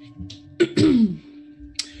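A man clearing his throat: one short, rasping burst with a falling pitch about half a second in, followed by a brief click near the end.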